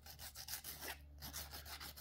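80-grit sandpaper rubbed in quick, repeated short strokes over the edge of a thin 3D-printed plastic part, a faint scratching as its corners are smoothed.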